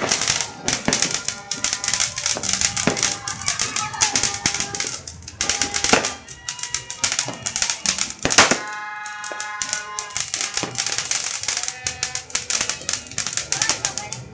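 Ground firework fountain crackling, a dense and rapid run of sharp crackles and pops, with a held pitched tone about two-thirds of the way through.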